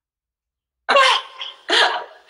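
The sound cuts out to dead silence for almost the first second, the live stream's audio dropping out. Then come two short bursts of a woman laughing.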